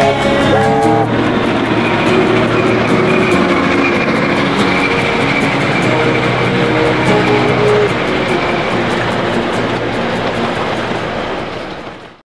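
A triple-headed steam train passing close by, the locomotives and then the carriages running over the rails in a dense, steady noise that fades out at the very end. A song fades under it in about the first second.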